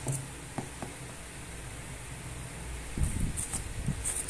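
A cardboard box being handled and its seal worked open: a few light taps in the first second, then a burst of scraping and rustling near the end, over a low steady hum.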